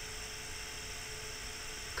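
Room tone: a steady electrical hum and hiss with a faint thin steady tone, and nothing else happening.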